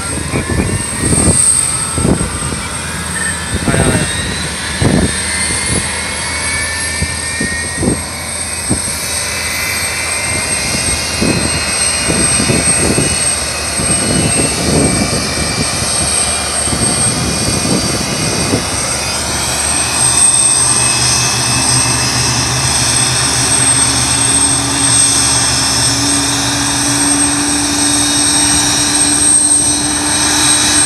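Tupolev Tu-204 jet engine starting up: a whine rises in pitch over the first ten seconds above a steady high tone. From about twenty seconds in, a low steady hum builds and steps up in pitch as the engine spools toward idle.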